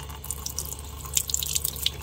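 Kitchen tap running into a sink, the stream splashing irregularly as a grape is rinsed by hand under it.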